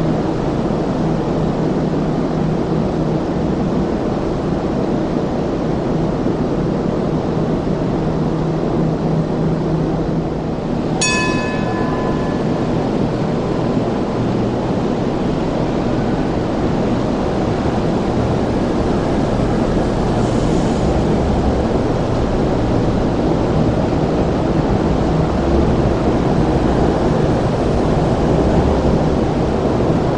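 MTR Light Rail trains running through the station, a steady rumble of wheels and motors. A low hum fades out about ten seconds in, and a single ringing metallic ding sounds about eleven seconds in.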